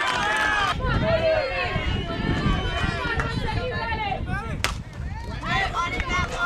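Several voices of players and spectators shouting and cheering over one another at a softball game, with wind rumbling on the microphone. A single sharp crack about four and a half seconds in, as of a bat hitting the softball.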